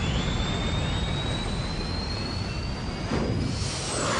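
Science-fiction spaceship sound effect: a steady low rumble under a high whine slowly rising in pitch, with a whoosh near the end as the craft departs.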